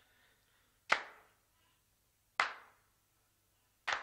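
Three sharp percussive hits, evenly about one and a half seconds apart, each fading quickly, forming a sparse beat in the music playing over a livestream's waiting screen.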